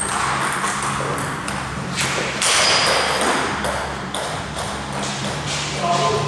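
Table tennis rally: a plastic ping-pong ball clicking off the bats and the table in quick succession.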